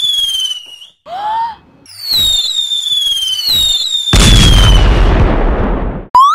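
Whistling firework rockets: a long falling whistle, a short rising-then-falling tone about a second in, then a second falling whistle. Near four seconds in, a loud bang with crackling that fades away.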